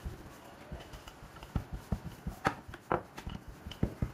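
Wooden rolling pin rolling out a stuffed paratha on a wooden rolling board, with irregular knocks and taps of the pin against the board that come more often and louder from about a second and a half in.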